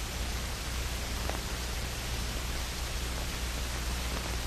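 Steady hiss and low hum of an old film soundtrack, with one faint tick about a second in.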